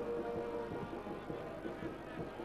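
Stadium crowd sound from the stands, made of sustained droning tones, with one steady held note clearest in the first second.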